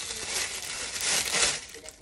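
Plastic bag crinkling and rustling as a shoe is pulled out of it, loudest about a second in.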